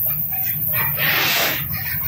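Freight wagons loaded with eucalyptus logs rolling past on the rails, a steady low rumble of wheels and running gear, with a louder rush of noise about a second in.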